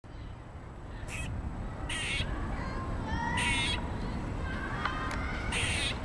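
Gray squirrel giving harsh, rasping alarm calls, an agitated reaction to being watched. There are four short calls spaced a second or more apart, over a steady low rumble.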